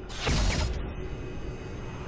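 Logo intro sting: a whoosh with a deep hit about a quarter second in, trailing off into a low rumble.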